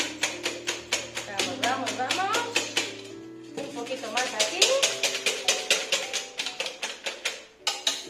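Eggs being beaten hard by hand in a stainless steel bowl: a fast, even clatter of the utensil striking the metal, about four strokes a second, with a short pause near the middle. Background music plays underneath.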